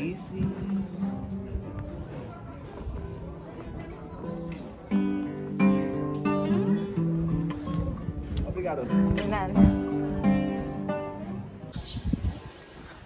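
Street musician playing an acoustic guitar, plucking and strumming a melody, with a voice heard over it at times.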